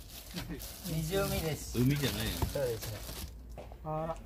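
People talking, with plastic bags rustling and a single sharp click about two and a half seconds in.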